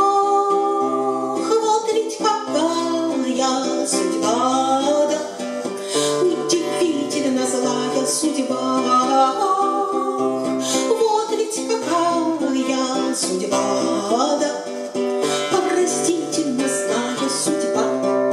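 A woman singing the refrain of a Russian bard song, accompanying herself with strummed chords on an acoustic guitar in a simple two-chord accompaniment.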